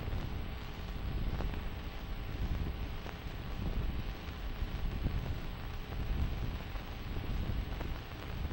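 Low rumble and hiss from a worn film soundtrack, with a few faint clicks.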